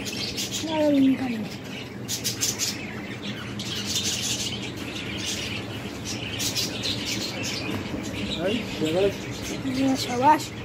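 Birds chirping steadily, with people's voices in the background; a voice rises out of it about a second in and again near the end.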